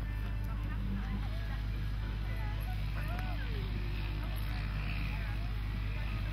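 A steady low rumble with faint, distant voices over it; no near sound stands out.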